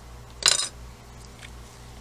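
A single short metallic clink about half a second in, with a brief ring: a metal palette knife set down, followed by a faint tick.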